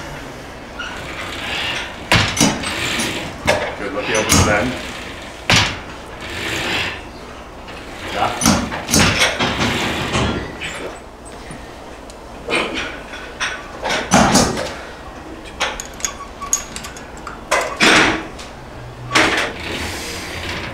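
Metal clanks and knocks from a cable machine's weight stack as the plates and selector pin are handled, a sharp knock every second or few. Indistinct voices sit underneath.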